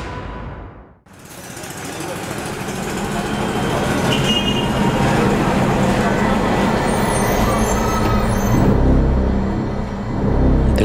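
Busy street ambience with traffic noise: vehicles running and general urban bustle. It fades up from a brief silence about a second in, and a low engine rumble grows near the end.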